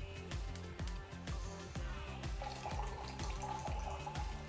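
Background music with a steady beat, and a held note entering a little past halfway. Under it, liquid trickles from a small bottle into a glass.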